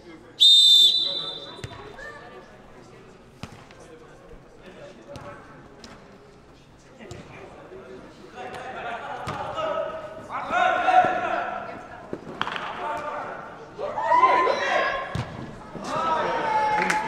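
A referee's whistle blows one short, loud blast about half a second in to start play. A football is then kicked several times on artificial turf in an indoor hall, and players shout from about eight seconds on.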